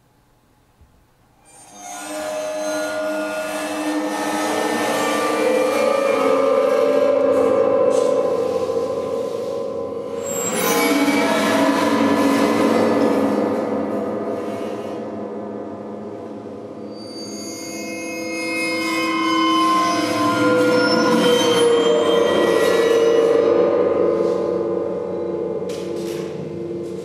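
Chordeograph, a field of more than 30 piano strings set vibrating by a bar drawn and pressed across them: a dense mass of many sustained string tones. It starts about two seconds in, swells and fades in several waves, and its pitches shift as the bar moves from one position on the strings to the next.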